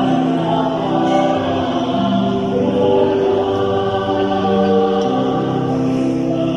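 Church choir singing a hymn at Mass in long, held notes that move from pitch to pitch.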